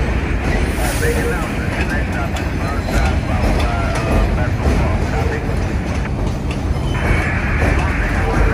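Vintage subway train rolling slowly past on elevated track, with a steady low rumble of wheels and running gear; a higher steady squeal joins near the end.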